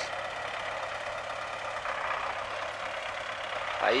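MTZ-80 tractor's four-cylinder diesel engine running steadily while its front loader lifts a round hay bale onto a trailer.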